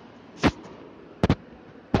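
Four short, sharp clicks with quiet in between: one about half a second in, a quick pair a little past the middle, and one at the end.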